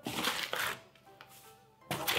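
Rustling of shredded paper packing filler and cardboard as hands dig through a shipping box, loudest in the first second, then fading. Faint background music runs underneath.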